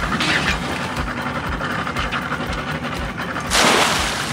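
A crab trap thrown overboard hits the sea with a loud splash near the end, over a steady low rumble.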